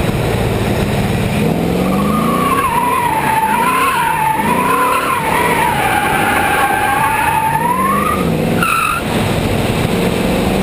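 Pontiac Trans Am's 5.7-litre LT1 V8, with long-tube headers and an aftermarket exhaust, revving up and down while its rear tyres squeal through a drift. The squeal wavers in pitch, starts about a second and a half in and breaks off near the end.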